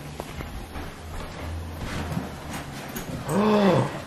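A low steady hum with a few faint clicks, then near the end one drawn-out vocal sound that rises and falls in pitch, lasting well under a second.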